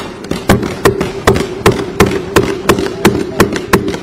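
Legislators thumping their desks in unison, a steady run of about three sharp thumps a second: the customary desk-thumping of approval for a budget announcement in an Indian legislative assembly.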